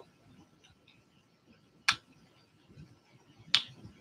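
Two sharp clicks about a second and a half apart from fingers working at a wristwatch's case back while trying to pop it open.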